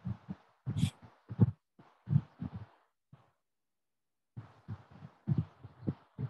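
Irregular dull thumps or pops, a few a second, with a pause of about a second midway, coming through the video call, which the listeners wonder might be gunshots.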